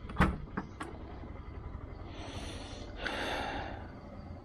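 SUV tailgate being unlatched and lifted open: a sharp latch click just after the start and a couple of lighter clicks, then two short rushing swishes as the gate goes up.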